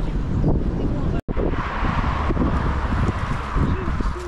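Wind buffeting the microphone: a loud, rough low rumble, broken by a split-second cut to silence about a second in, after which a hissing noise joins it.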